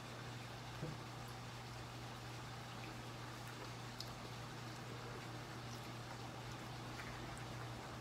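Quiet background with a steady low hum and a few faint, brief ticks.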